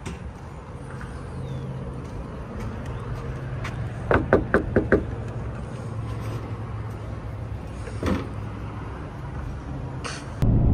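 Five quick knocks on the plastic door of a portable toilet, then a single clunk about three seconds later as the door is opened, over a steady low background hum.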